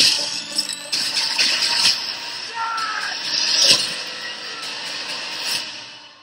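Film trailer soundtrack of music under dense action sound effects, with sharp loud hits near the start, about a second in, near two seconds and again past the middle.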